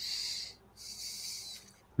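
A person breathing in twice with short airy hisses, a pause between them.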